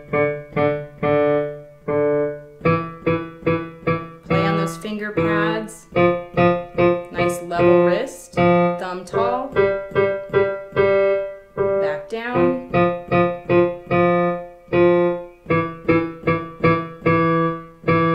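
Digital piano played slowly with the left hand in the lower register: a five-finger practice pattern of four short notes followed by two long held notes, repeated again and again as it moves through the scale.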